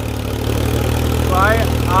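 Diesel engines of two Mahindra tractors, a 575 and a 265, pulling against each other in a tug-of-war, a steady low drone.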